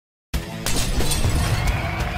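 Intro sound effect of a shattering crash that starts suddenly after a brief silence, over music.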